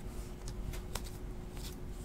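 2017-18 Upper Deck hockey trading cards flipped through by hand, a few soft card snaps and slides as each card is moved off the stack, the sharpest about a second in. A faint steady hum runs underneath.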